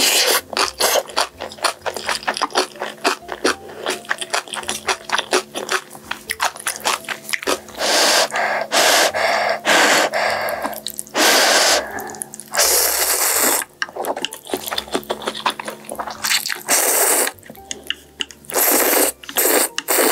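Close-miked eating sounds. The first part is rapid, wet, clicky chewing of a spoonful of mixed-grain rice. In the second half come several long slurps of noodles in broth, each lasting about a second.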